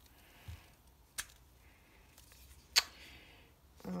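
Small plastic handling noises as a GoPro Hero Session camera is pushed into its plastic frame mount: soft rubbing, a light click a little after a second in, and a sharper, louder click about three-quarters of the way through.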